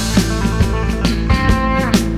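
Country-rock band music, an instrumental passage: guitar over a steady drum beat, with a note bending in pitch in the second half.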